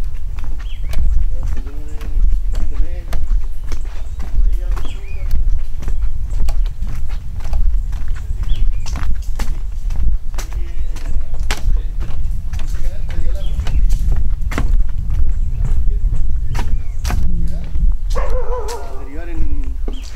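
Footsteps knocking irregularly on wooden boardwalk planks, over a steady low rumble, with faint voices talking now and then, clearest near the end.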